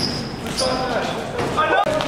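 Basketball being dribbled on a gym floor during a game, with players' voices calling out on the court.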